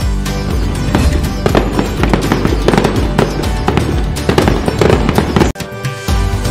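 Rapid firework bangs and crackles over festive background music. Both cut off suddenly about five and a half seconds in.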